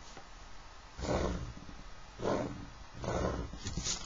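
A pencil drawn firmly along the edge of a plastic set square on paper, in three strokes about a second apart, going over a construction line to darken it.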